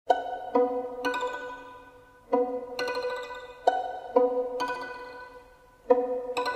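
String instruments played pizzicato: short phrases of plucked notes, each note starting sharply and ringing away, with brief lulls between phrases.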